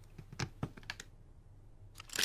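Plastic Lego bricks clicking as they are handled and pressed together: five or six light clicks in the first second, then quiet handling.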